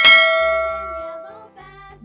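A bright, bell-like ding sound effect that strikes once and rings on, fading away over about a second and a half.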